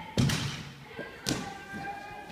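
Two thuds about a second apart from a gymnast's vault: the springboard struck at take-off, then the landing on the mat. The first thud is the louder.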